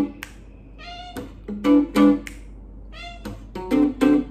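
Blues phrases fingerpicked on an archtop guitar, in short groups of plucked notes, with a cat meowing once about a second in, in a gap between phrases.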